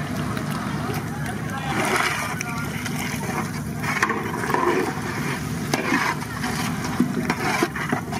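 Prawns frying in oil in a large wood-fired pan, stirred with a long metal ladle that knocks and scrapes against the pan now and then. A steady low rumble runs underneath, and people's voices come and go.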